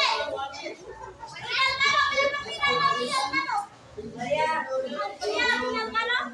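Raised, high-pitched voices talking and calling out, in two long stretches with a short lull in the middle.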